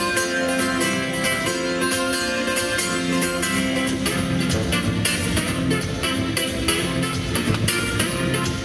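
Solo acoustic guitar played fingerstyle in a rough-and-ready style: a steady rhythm of plucked notes and chords over a moving bass line.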